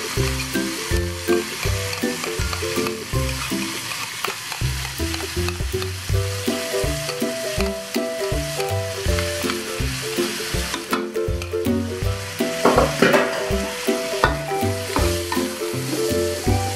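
Onion and carrot strips sizzling in a wok as they are stirred with a metal spatula, with tomato sauce being added, the spatula knocking against the pan a few times in the second half. Background music with a steady beat plays over it.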